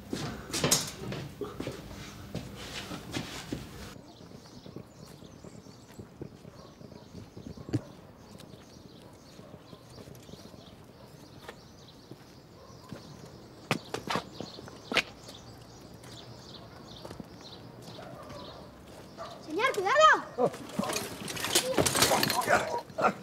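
Quiet outdoor ambience with a few scattered soft knocks. Near the end comes a loud, short cry that rises and falls in pitch, then a clatter as a bicycle crashes into a man and falls onto the grass.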